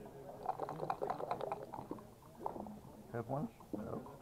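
Backgammon dice rattled in a dice cup and rolled onto the board, a quick run of clicks and clatter in the first half, with voices talking in the background.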